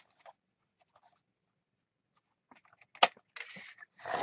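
Sliding paper trimmer cutting a strip of paper. A few faint ticks, then about three seconds in one sharp click and a short scrape as the cutting head is worked along the rail.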